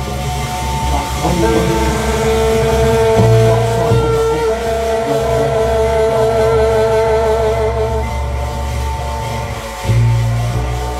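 A jazz quartet playing live, recorded roughly on a phone: upright bass and drums with cymbals. Over them a long note is held with a slow waver from about a second and a half in until near the end.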